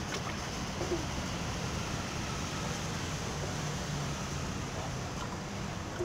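Steady outdoor rushing background noise, with a faint low hum rising a little past the middle.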